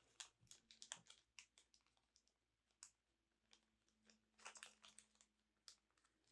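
Near silence: room tone with scattered faint clicks and ticks of small objects being handled, in a cluster about a second in and another past four seconds.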